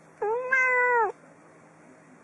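A domestic cat meowing once: a single drawn-out meow of about a second, steady in pitch and dropping at the end.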